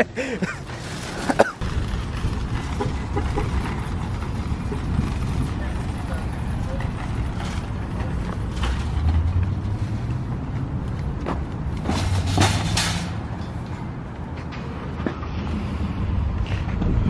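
A metal shopping cart rolling and rattling over asphalt, a steady low rumble with louder clattering about twelve seconds in.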